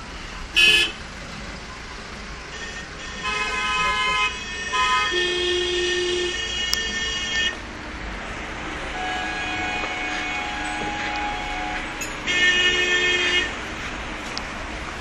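Vehicle horns honking in road traffic: a short sharp blast about half a second in, then several long held blasts through the middle and another near the end, over steady traffic noise.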